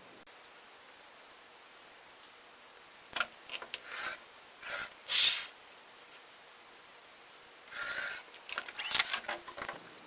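Olfa 45 mm rotary cutter blade rolling through fabric against a cutting mat as a border strip is trimmed along a ruler: short cutting strokes in two spells, from about three seconds in and again near the end, after a quiet start.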